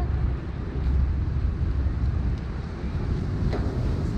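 Wind buffeting the camera microphone: a steady, unevenly pulsing low rumble.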